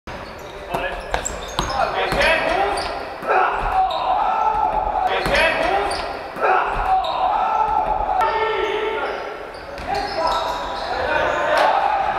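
Live basketball game sounds in a large gym: a ball bouncing on the wooden court with sharp thuds, and players' voices calling out, all echoing in the hall.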